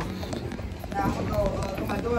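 A voice speaking indistinctly, with scattered knocks and rustling from a handheld phone being carried while walking.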